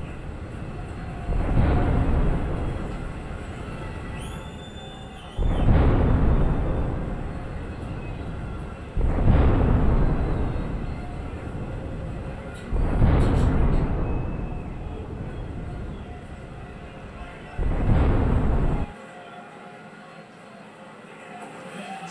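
Dramatic music stinger built on five heavy booming hits about four seconds apart, each starting suddenly and dying away, with a short high tone after the first. It drops away after the last hit, leaving a quieter tail.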